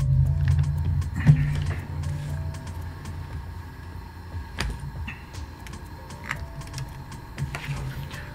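Low hum of a small electric fan or motor on a phone-repair bench. It dies away over the first few seconds, with a few light clicks and taps of parts being handled.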